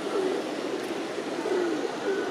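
Feral pigeons cooing: a few soft, low coos over a steady hiss of open-air ambience.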